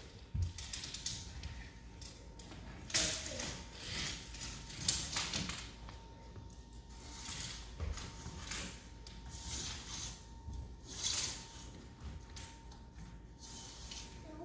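Retractable steel tape measure being pulled out along a wooden floor, its blade rattling and scraping in irregular bursts.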